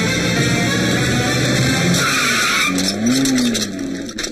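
Car tyres screeching as a car brakes hard, in a short burst about two seconds in, over background film music.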